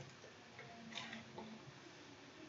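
A few faint small clicks, about a second in, from fingers working open the plastic flap of the Dyson V11 Outsize's wiring connector.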